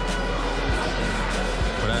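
Background music with a steady bass line and beat.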